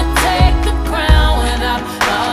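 Pop song with deep bass hits twice over sustained keyboard and vocal tones.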